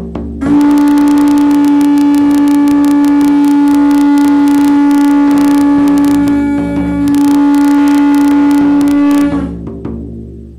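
Conch shell trumpet (caracol) blown in a long steady note, with a brief break about six and a half seconds in before a second long note that stops about a second before the end. Underneath, a large hide frame drum is struck in rapid even beats.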